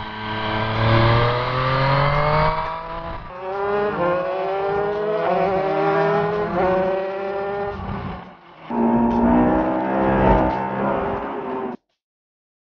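Onboard engine sound of a motorcycle and a racing kart accelerating. The engine note climbs in pitch several times as they speed up, with short breaks where the clips change, and cuts off suddenly near the end.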